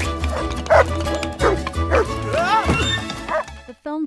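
Film soundtrack music with a steady bass beat, over which a dog yelps and barks a few times and a character laughs.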